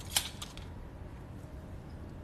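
A single sharp click of metal surgical instruments being handled, with a fainter tick just after, over a faint steady room hum.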